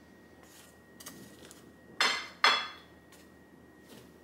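Two sharp clinks of kitchenware about two seconds in, half a second apart, each ringing briefly.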